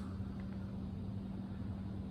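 Steady low background hum of a small room, with one constant low tone and no distinct events.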